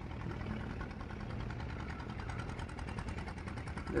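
Boat engine running steadily with a rapid, even chugging.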